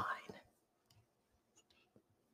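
The end of a spoken phrase trailing off in the first half-second, then near silence for the rest.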